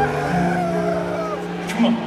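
Arena sound system playing the intro video's soundtrack: held electronic tones with a slow falling glide.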